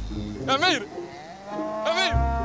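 A cow mooing: a short call about half a second in, then one long, slightly falling moo from about a second and a half in.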